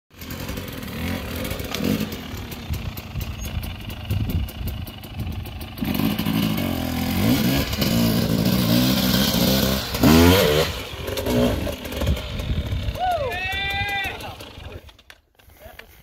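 Dirt bike engines running and revving in rising and falling bursts as a bike works its way up a rock ledge, loudest about ten seconds in. A voice calls out briefly near the end.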